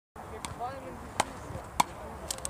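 Wooden frescobol paddles hitting the ball in a rally: three sharp knocks, a little over half a second apart, the later two the loudest.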